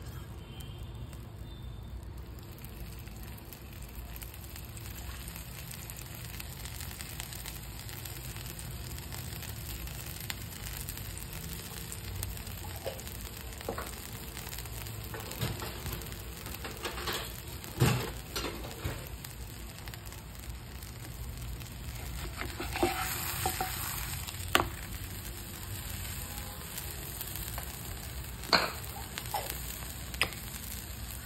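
Potato-stuffed paratha frying in oil in a nonstick pan: a steady low sizzle, louder for a couple of seconds around 23 seconds in. A few sharp clicks of a spoon on the pan cut through it, the loudest about 18 seconds in.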